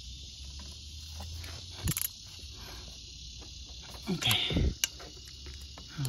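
A few sharp metallic clicks of a socket being worked by hand on the aluminium intake manifold bolts, over a steady low hum and a high hiss.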